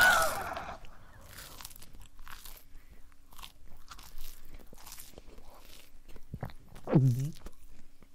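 Chewing and crunching sound effect: a run of faint, irregular crunches and crackles, with a short voiced sound falling in pitch about seven seconds in.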